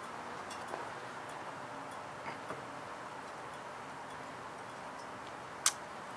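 Quiet, steady background hiss with a few faint ticks and one sharper click near the end.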